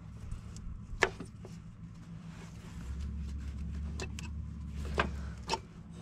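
Scattered metallic clicks and clinks of parts and tools being worked by hand in a diesel truck's engine bay, over a low steady hum. A deeper hum joins about three seconds in and stops shortly before the end.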